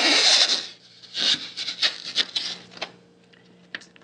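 Transfer tape being pulled off its roll: a loud rasping peel for the first half second or so as the adhesive lets go, then a few short crinkles and rustles of the loose sheet being handled, and one sharp click near the end.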